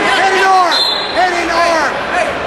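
Several voices shouting over one another, drawn-out yells of spectators and coaches urging on wrestlers in a gym.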